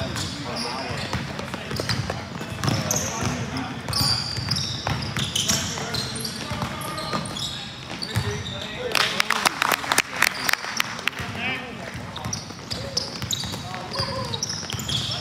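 A basketball bouncing on a hardwood gym floor amid the squeak of sneakers, with a quick run of sharp bangs and bounces about nine to ten and a half seconds in. Players' voices call out indistinctly in an echoing hall.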